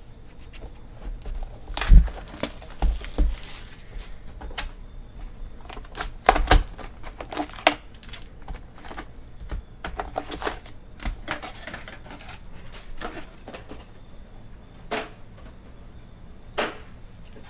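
Hands opening a cardboard trading-card hobby box and pulling out foil-wrapped card packs onto a tabletop: a run of sharp clicks, knocks and crinkles. The loudest knock comes about two seconds in, with a cluster of knocks around six to seven seconds.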